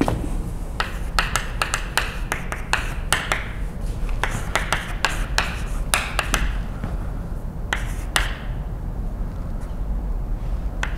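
Chalk writing on a blackboard: a quick, irregular run of sharp taps as the chalk strikes the board, with a few short scratchy strokes, stopping a little after eight seconds in.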